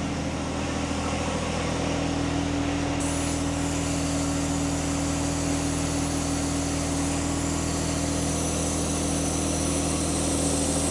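A machine running steadily, with a constant low hum of several even tones. A higher hiss joins in about three seconds in.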